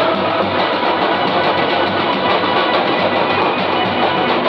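Loud music with instruments, playing steadily.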